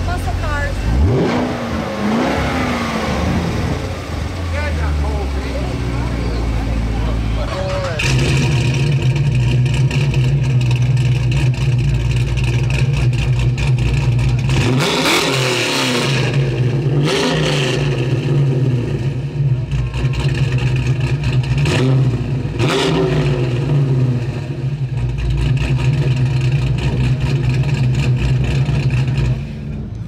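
A car engine running, its pitch rising in revs in the first few seconds. From about eight seconds it settles into a steadier drone, with a few short louder surges.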